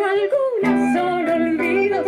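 A woman singing a folk song live with a small acoustic band of guitars and flute. Her voice wavers with vibrato and slides down through a short run about half a second in, then a new phrase begins over the band.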